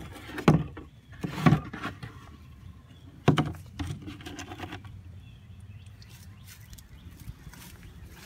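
A plastic collection bin being pulled out and handled beside a wooden frame: three sharp knocks in the first few seconds, then quieter rustling and scraping.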